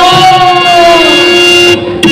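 A man's long drawn-out shout, one held call of nearly two seconds whose pitch arches up and then falls before it cuts off sharply near the end.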